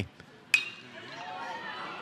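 A metal baseball bat hits a pitched ball about half a second in: a single sharp ping with a brief ringing tone. Ballpark crowd noise rises afterward.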